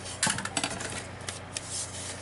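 Card stock being handled on a crafting table: a quick cluster of crisp paper rustles and taps about a quarter second in, then a few scattered clicks.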